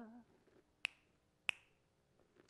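Two sharp finger snaps about two-thirds of a second apart, keeping time to an a cappella sung poem, just after a sung note fades out.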